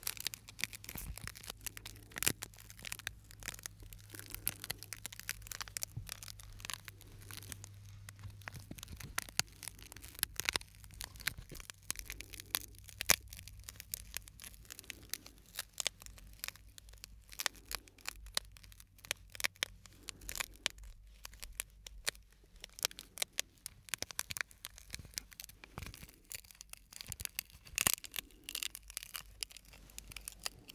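Shards of broken glass handled and rubbed between the fingers close to the microphones: a dense, irregular run of small sharp clicks and scratchy crackles.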